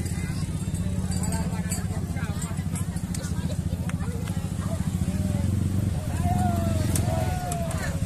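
Motor scooter engines running slowly at low revs close by, a steady low hum, with crowd voices and calls over it that grow clearer near the end.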